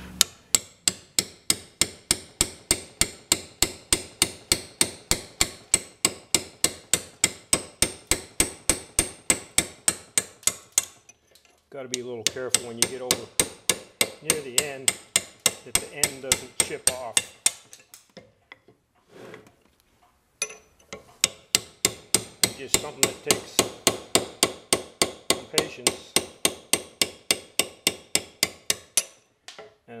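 Hammer driving a hand chisel to pare excess tin-based babbitt off the lip of a freshly poured main bearing shell, in steady metallic taps about three a second. The taps break off for a few seconds past the middle, then resume.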